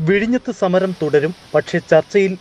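A news narrator speaking continuously in Malayalam, a voice-over reading the report.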